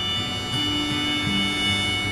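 Harmonica on a neck rack and acoustic guitar playing a soft instrumental passage, the harmonica holding one long high note while lower guitar notes sound beneath it.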